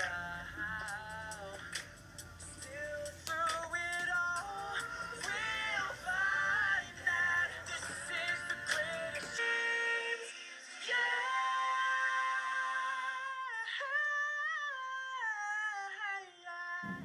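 A musical number from the film: singing voices over pop backing music. About halfway through, the low backing drops away and the voices carry on thinner.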